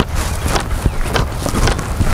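Wind rumbling on the microphone while it is carried at a walk across grass, with irregular clicks and knocks from the walking and the gear being carried.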